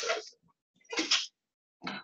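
Short, noisy vocal bursts from a person, the loudest right at the start, then a shorter one about a second in and a small one near the end.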